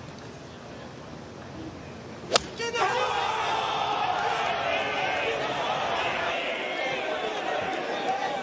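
A golf club strikes the ball off the tee with one sharp crack about two seconds in, over a low gallery murmur. Straight after, the crowd's chatter rises and carries on as the ball flies.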